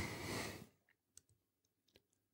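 A short breath at the start, then a few faint computer mouse clicks.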